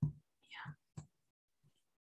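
Faint, brief voice sounds between speakers: a short soft vocal sound at the start and a quiet murmur about half a second in, with a small click about a second in.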